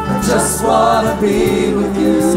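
A church worship team sings a gospel worship song as a group over band accompaniment. Several voices hold long, wavering notes.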